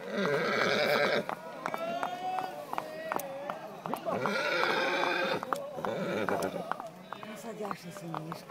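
Horse hooves clopping on an asphalt road, with two long, wavering voice-like calls over them: one at the start and one about four seconds in.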